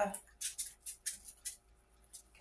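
Soft rustling from handling, a series of short light crackles close together, over a faint steady hum.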